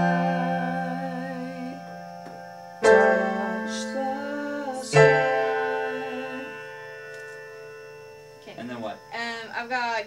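Sustained chords played on an electronic keyboard: one rings on from the start, a new chord is struck about three seconds in and another about five seconds in, each fading slowly. A voice comes in near the end.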